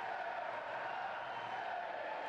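Football crowd applauding and cheering from the stands, a steady wash of noise without breaks.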